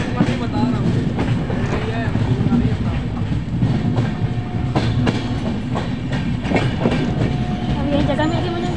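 Indian passenger train coach running along the track, heard through an open window: a steady rumble of wheels on rails, with a few sharp clacks over rail joints about five and six and a half seconds in.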